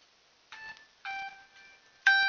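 Electronic alert beeps: a short pure tone about half a second in, then a longer, slightly lower tone held for most of a second, with louder beeps starting right at the end.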